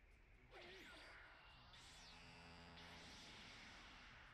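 Faint sound from an anime fight scene: a swooshing effect about half a second in, then a held musical tone over a hissing haze.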